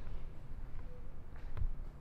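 Quiet room tone in a pause between speech: a steady low hum, with a soft knock and a couple of faint clicks about one and a half seconds in.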